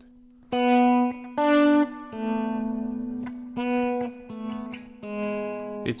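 Clean electric guitar on a left-handed Jag-Stang-style instrument: about six separate notes are picked, several held steady and then cut down sharply soon after the pick, as the picking hand's finger rolls the volume knob down.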